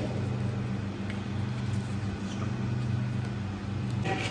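A steady low mechanical hum, with faint rasping and a few light ticks from sandpaper being rubbed over a leg bone to scrape off the muscle fibres still attached to it.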